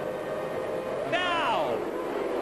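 A full grid of 1998 Formula One cars with V10 engines held at high revs on the start line, a steady engine note. About a second in, a louder note comes in and falls steeply in pitch.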